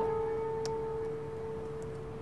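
A single guitar note left ringing and slowly fading, with a faint click about two-thirds of a second in.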